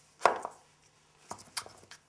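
Picture-puzzle cubes knocking against each other and the wooden tray as they are lifted out and set in place. A sharp knock comes just after the start, and a quick run of lighter clicks follows in the second half.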